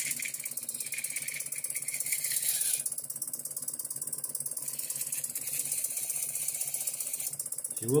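Model steam-powered bandsaw running with a fast, even mechanical clatter, its blade cutting through a thin wooden stick in two stretches, the first until about three seconds in and the second from about five seconds to near the end.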